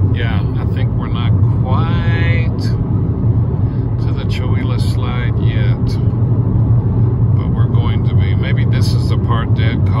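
Steady low rumble of tyre and engine noise inside a car cabin at highway speed, with snatches of speech over it.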